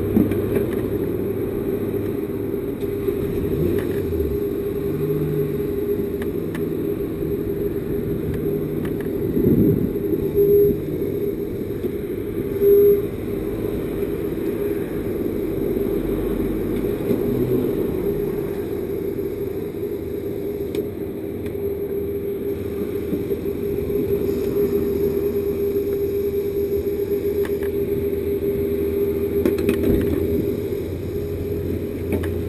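A steady machine hum at the fuel pumps, with a few short louder sounds between about nine and thirteen seconds in.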